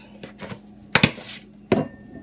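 Two sharp knocks about three quarters of a second apart: containers being handled and set down on a kitchen countertop.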